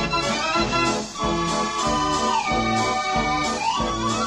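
The Dutch street organ De Sater playing a tune: a steady oom-pah beat of bass notes and chords under the pipe melody, which slides down about halfway through and back up near the end.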